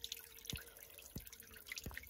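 Fingertip tapping the button on a UV water-purifier bottle cap: three light taps about two-thirds of a second apart, part of a five-tap sequence that switches on the cap's UV light.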